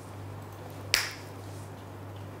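A single sharp click about a second in, over a steady low hum.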